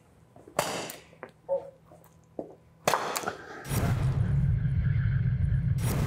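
A single sharp shot from a training pistol about half a second in. About three seconds in comes a rushing whoosh, then a low, steady music bed for the last two seconds.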